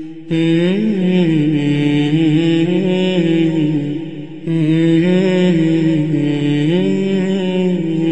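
A man's unaccompanied voice chanting in long, slowly winding melodic phrases, pausing for breath just after the start and again about halfway through.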